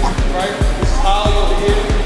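Background music with a deep bass-drum beat, a few hits a second, and a voice over it.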